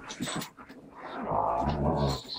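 Dogs play-fighting, with a low growl from one of them in the second half, lasting about a second.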